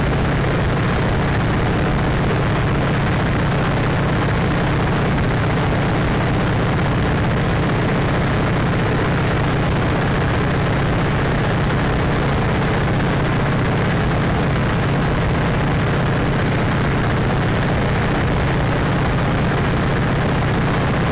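Open-cockpit biplane in level flight, heard from inside the cockpit: the propeller engine drones steadily under constant wind noise, with no change in pitch.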